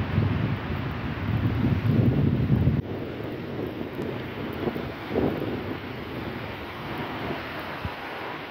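Low rumble of city street traffic, loudest in the first three seconds and dropping off suddenly just under three seconds in, then a steadier, quieter traffic noise with a brief swell about five seconds in.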